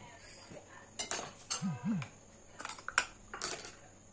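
Kitchenware being handled on a counter: a few separate light clinks and knocks of dishes and lids, about a second in, near the middle and again near the end.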